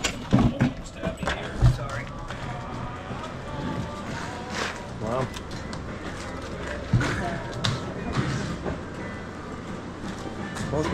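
Knocks and thumps from a plastic wheeled cart carrying a deer carcass as it is pushed in over a doorway and across the shop floor. The loudest bumps come about half a second and a second and a half in, with another near seven seconds, over music and voices in the background.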